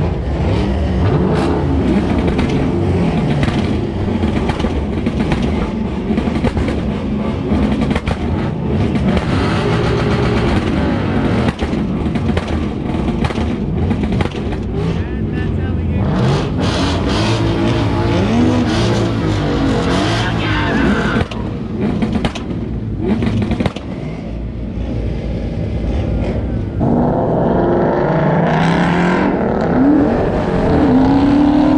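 Several car engines running and revving, their pitch rising and falling again and again. Near the end one engine gets louder and climbs in pitch as the car accelerates.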